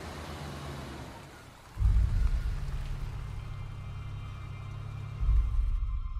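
Low road and engine rumble of a moving car heard from inside the cabin, with a hiss over it; it steps up louder about two seconds in and again about five seconds in.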